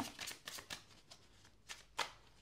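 Tarot Illuminati cards being shuffled by hand: a quick run of soft card clicks in the first second, then quieter handling, with a couple of sharper clicks near the end.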